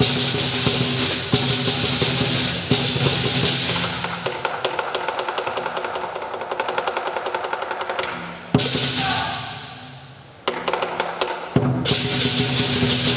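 Southern lion dance percussion band, big lion drum with cymbals and gong, playing to the lion's moves. The beat breaks into a fast roll of even strokes in the middle, then a sudden loud crash about eight and a half seconds in rings and fades for two seconds before the full beat starts again.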